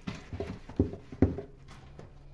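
Rubber-gloved hand scrubbing a wet, soapy stainless-steel sink basin, giving a short run of hollow knocks and rubbing squeaks on the steel. The two loudest come about a second in, and then it goes quiet as the hand lifts away.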